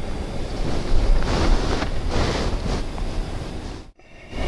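Road and wind noise inside a moving car's cabin: a steady low rumble with a few swells of hiss, cutting off suddenly just before the end.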